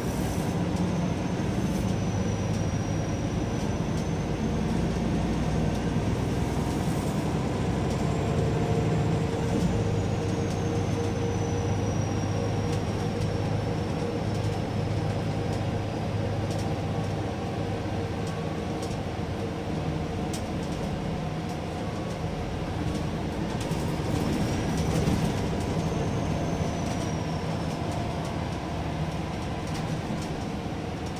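Double-decker city bus on the move, heard from inside the upper-deck cabin: steady engine and road rumble with a low hum, and a faint high whine that rises and falls a few times.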